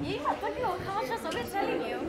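Several students talking over one another in a classroom: indistinct overlapping chatter.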